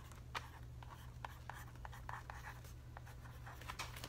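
BIC mechanical pencil writing on the cardboard back of its package: a faint run of short, irregular pencil strokes as a name is written by hand.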